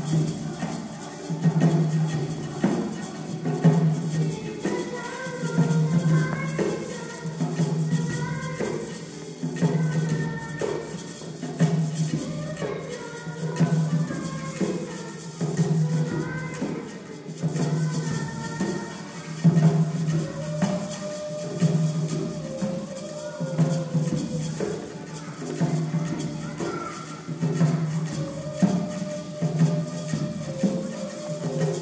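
A children's choir song: a young girl sings a solo at a microphone over keyboard and hand-drum accompaniment, with a low beat coming back about every two seconds.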